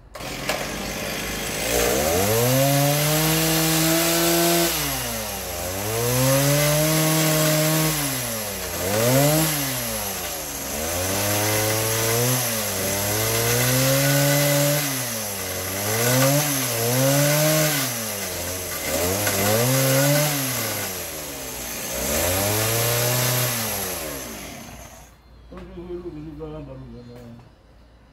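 A power tool's motor speeding up and slowing down over and over, with a rough cutting noise and a steady high whine. It stops about a second before the end.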